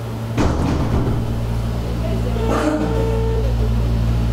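Mobile phone on speakerphone during a call: a single steady ringback beep, a little under a second long, about two and a half seconds in, with faint muffled voice traces and a brief rustle about half a second in, over a steady low electrical hum.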